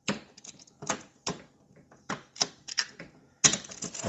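Packing material being handled and pulled off a plastic 3D printer: irregular clicks and crackles, with the loudest click about three and a half seconds in.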